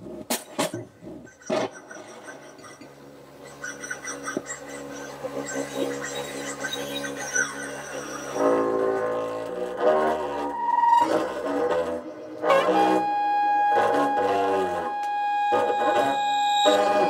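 Free-improvised jazz from baritone and alto saxophones, double bass and electronics. Scattered clicks give way to a low sustained drone, and from about halfway louder held saxophone tones build, with a long steady high note near the end.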